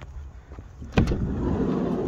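Sliding side loading door of a Citroën Dispatch van unlatching with a sharp clack about a second in, then rumbling open along its runner for about a second and a half.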